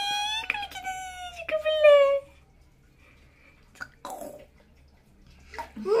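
A baby's long high-pitched vocal squeal, sliding slightly down in pitch and ending about two seconds in, followed by a few faint splashes of bathwater in a plastic tub.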